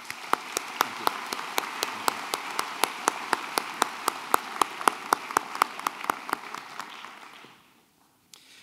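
Audience applauding in a hall, with a few close claps standing out sharply above the general clapping; it dies away near the end.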